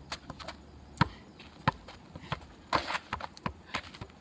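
Football juggled on the foot: a few quick taps, then a loud thud about a second in, after which the steady juggling rhythm breaks into irregular ball thuds and shoe scuffs on gravel.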